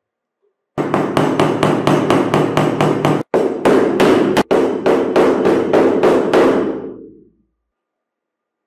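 Metal hammer tapping a wooden dowel into a drilled hole in a wooden board: a quick, even run of blows about four a second, with two brief breaks, that starts just under a second in and fades out near the end.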